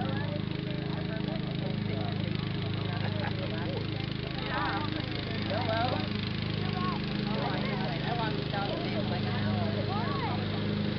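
Distant voices talking and calling, no words clear, over a steady low hum.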